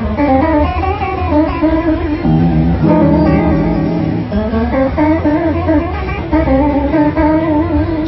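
Electric guitar played through a chorus effect pedal in triangle modulation mode, the notes wavering gently in pitch.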